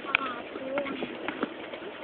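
Faint voices with scattered irregular clicks and knocks.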